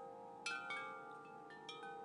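Faint metallic chimes ringing: a few notes struck about half a second in and again near the end, each ringing on over long held tones.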